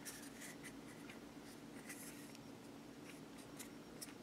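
Near silence: a steady low hum with faint, scattered scratchy rubs of fingers handling and turning a small 3D-printed statue stand.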